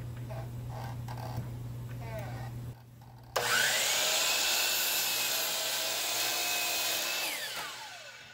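A steady low hum, then a miter saw starts about three seconds in with a rising whine and cuts through a solid walnut board for about four seconds. Near the end the motor winds down with a falling whine.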